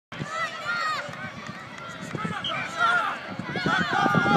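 Many young children shouting and calling out at once on an outdoor pitch, their high-pitched voices rising and falling and overlapping, with adult voices among them.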